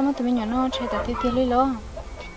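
Domestic fowl calling in a few drawn-out, wavering notes.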